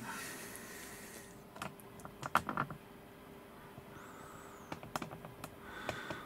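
Scattered light clicks and knocks of handling as the camera is moved, a few in quick succession about two and a half seconds in and more near the end, over a faint steady hum.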